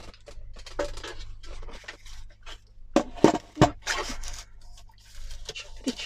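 A plastic paper trimmer being handled and set down on a cutting mat, with three loud knocks about three seconds in, amid light clicking and the rustle of paper being slid into place on it.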